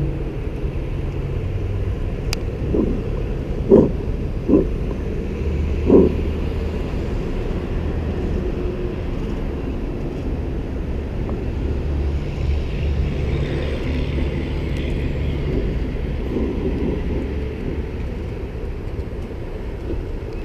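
Steady drone of motor vehicles running at and around a gas station, with low engine hum and road noise throughout. A few short thumps come between about four and six seconds in.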